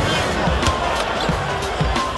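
A basketball dribbled a few times on a hardwood court, dull thumps over steady arena crowd noise and music.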